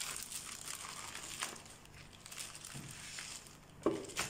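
Thin clear plastic bag crinkling and rustling irregularly as hands handle it and slide a paper instruction manual out of it.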